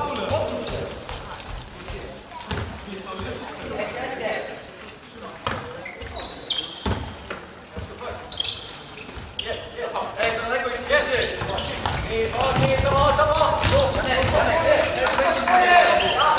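Futsal ball being kicked and bouncing on a wooden sports-hall court, a few sharp knocks echoing in the hall, with players shouting to each other, louder in the second half.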